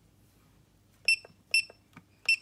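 Keypad of a 16-line 4D laser level beeping as its buttons are pressed: two short, high-pitched beeps about half a second apart, starting about a second in.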